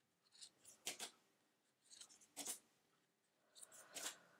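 Faint, short swishes of tarot cards being slid through a hand-held deck, a handful of separate strokes with near silence between them.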